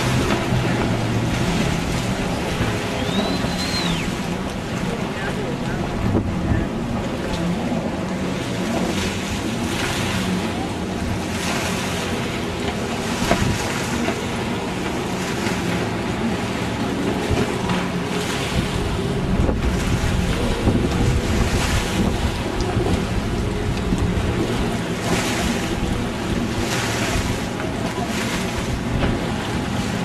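Boat engine running steadily over rushing water, with gusts of wind buffeting the microphone.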